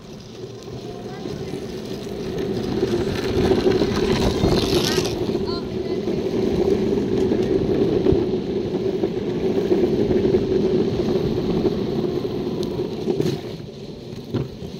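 Longboard wheels rolling on asphalt: a steady rumble that builds over the first few seconds, holds, and eases near the end.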